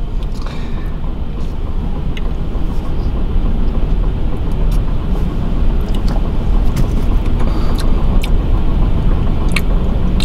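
Steady low rumble inside a parked car, with a few light clicks as a plastic drink cup is handled and sipped from.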